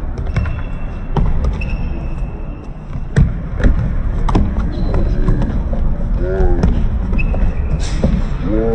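Futsal ball being kicked and thudding on a wooden sports-hall floor during play, echoing in the large hall, with the hardest kick about three seconds in. Players shout to each other near the end, and there are short squeaks of shoes on the court.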